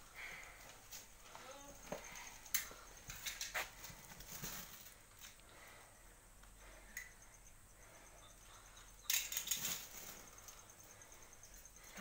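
Mostly quiet handling noise: scattered faint rustles and scuffs of a cloth snake bag and hands as a large python is worked into it, with a brief cluster of scuffing about nine seconds in.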